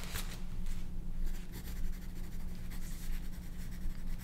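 Pencil writing on paper on a clipboard: a run of irregular, scratchy strokes.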